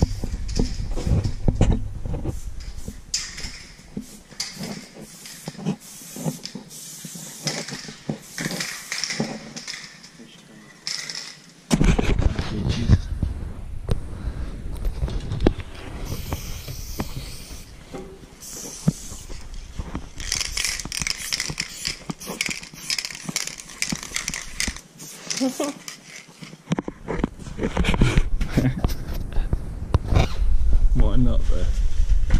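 Someone climbing stairs: irregular footsteps, clothing rubbing on the microphone and heavy breathing, with some muffled talk.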